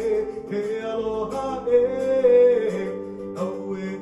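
Live Hawaiian-style music: a man singing held, wavering notes over a strummed ukulele and an electric bass.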